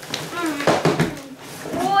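Small children's voices making short exclamations, with a rustle of cardboard and nylon fabric for about half a second in the middle as the box flap is pulled back.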